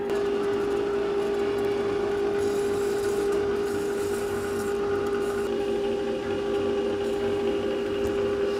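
Cuisinart electric ice cream maker running with a steady motor hum, its frozen bowl turning against the paddle.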